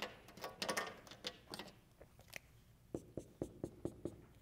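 Dry-erase marker on a whiteboard: short strokes and taps, ending in a quick run of about six taps as a dashed line is drawn.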